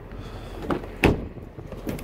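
Driver's door of a 2011 Nissan Rogue being opened by its outside handle: a few sharp latch clicks and knocks, the loudest about a second in.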